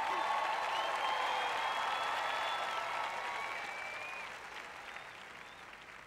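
Audience applauding, gradually dying away over the last few seconds.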